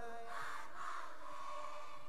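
A lull between sung lines: the lead singer's last held note fades out in the first half second, leaving faint voices of an audience singing along.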